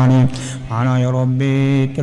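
A man chanting a prayer into a microphone in a slow, drawn-out melodic voice. A short break for breath comes about a third of a second in, then one long held note.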